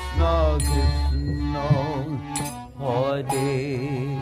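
Devotional kirtan: a man's voice leading the chant, his pitch wavering up and down in long sung lines, with instruments playing underneath.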